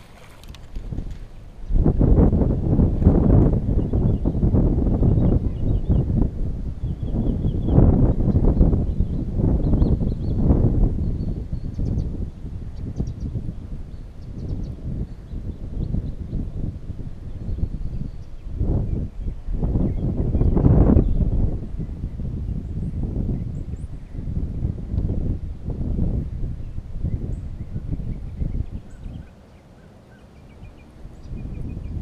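Wind buffeting a body-worn action-camera microphone, a low rumble that swells and drops in uneven gusts, with faint bird chirps now and then.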